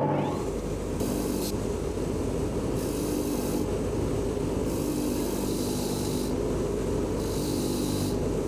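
Bench grinder running with a steady hum while small steel bolts are pressed against its spinning wheel to clean off rust and dirt, giving four separate stretches of high scratchy grinding.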